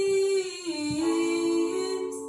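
A woman's voice singing and humming long held notes, stepping down to a lower pitch a little under a second in.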